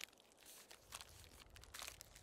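Faint crinkling and rustling of clear plastic wrapping as it is handled, in a few soft, scattered clicks.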